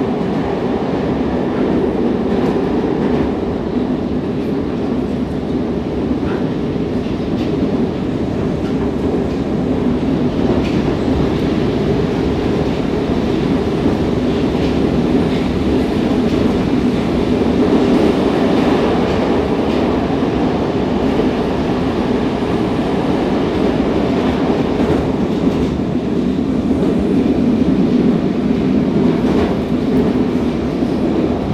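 Cabin noise inside an 81-760/761 "Oka" metro car running between stations: a steady rumble of wheels on the rails and the car's running gear, with some clickety-clack, swelling a little now and then.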